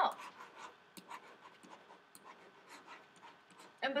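Stylus strokes on a writing tablet as a word is handwritten: a faint, irregular run of small scratches and taps.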